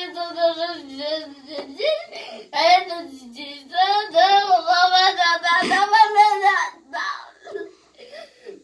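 A young boy singing drawn-out, wordless notes in a wavering voice, in several phrases with short breaks between them. The longest and loudest phrase runs through the middle of the stretch.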